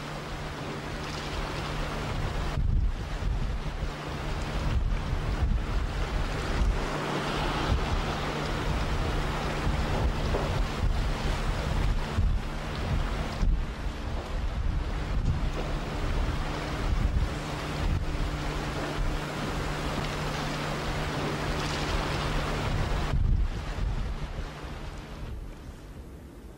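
Strong gusty wind buffeting the microphone over rough river water, with waves splashing and a boat engine's low steady hum underneath. The wind eases near the end.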